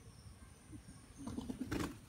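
Parakeet chick giving a short, low, throaty call, starting a little after a second in, with a sharp click near the end.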